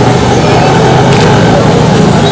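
Steady, loud street traffic noise from vehicles on the road.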